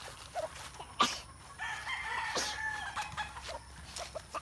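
Gamefowl rooster crowing once, one long call of about a second and a half, after a sharp click about a second in.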